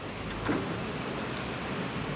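A small metal door being pulled open on its hinge, with a short click about half a second in, over a steady rushing hiss.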